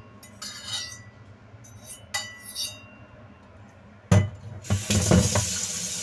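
A few light, ringing clinks, like glass tapping. About four seconds in, a sudden louder rushing noise begins and continues.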